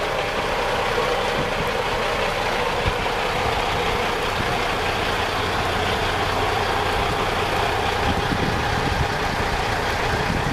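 Semi-truck diesel engine idling steadily at close range, a continuous low rumble.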